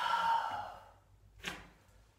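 A man's long, heavy sighing exhale as he recovers from a heavy set of barbell hip thrusts, then a short sharp puff of breath about a second and a half in.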